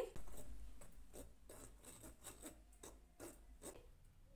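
Faint, irregular rasping strokes of wheat flour being sifted through a sieve, a few strokes a second, growing fainter.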